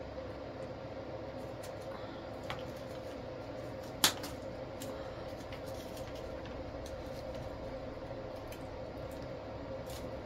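Stem cutters snip once, sharply, about four seconds in, clipping through the tough wired stem of an artificial flower, with a few lighter clicks of handling around it. Under them runs a steady low room hum with a faint steady tone.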